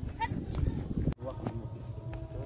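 Outdoor ambience with faint, indistinct voices and a low rumble of wind or handling on the microphone, broken by an abrupt edit cut about halfway through.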